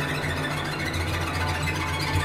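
Cello and orchestra playing a dense, sustained passage over low held notes, at an even level.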